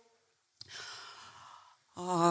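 A woman's breath close into a handheld microphone, starting sharply about half a second in and lasting about a second, taken in a pause between phrases of speech.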